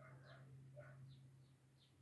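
Near silence: room tone with a low steady hum and a few faint, short high chirps scattered through it.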